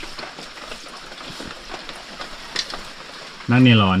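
Steady hiss of rain falling and water trickling among wet streambed rocks, with a few faint knocks.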